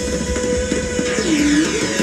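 Live band playing ramwong dance music, with held electric instrument notes and one note that bends down and back up about halfway through.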